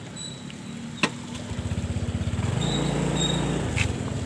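Motorcycle engine running as the bike rides along, its pulsing note getting louder from about a second and a half in. A single sharp click about a second in.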